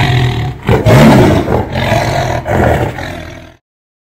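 A loud, deep roar that rises and falls in several swells, then cuts off suddenly about three and a half seconds in.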